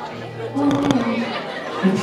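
Recorded character dialogue from the performance track, played over a bar's sound system: a voice speaking, with a brief cluster of clicks a little before the middle.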